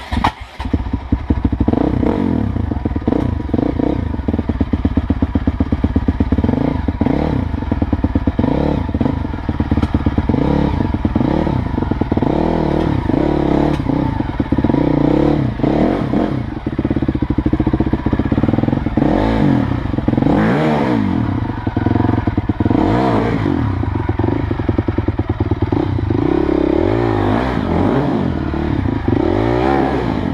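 Dirt bike engine revving up and down over and over, blipped in low gear as the bike climbs over rocks and up a steep dirt trail. The bike knocks and clatters over the stones.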